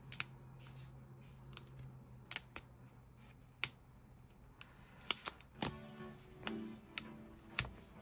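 Stickers and planner pages being handled by hand: a scattering of small, sharp clicks and taps, about nine in all. Quiet background music runs underneath.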